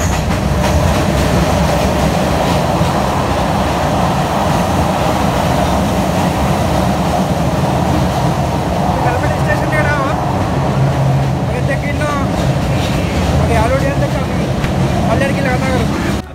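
Passenger train running along the line, heard from inside the carriage: a steady noise of the wheels on the rails that does not let up.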